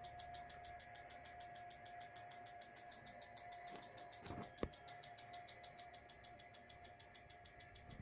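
Near silence: faint room tone with a thin steady whine and a fast faint ticking, broken by one soft click a little past halfway.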